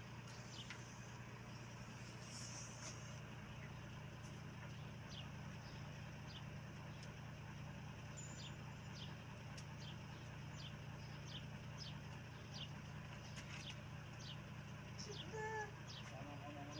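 Outdoor ambience: a steady low hum throughout, with small birds chirping on and off.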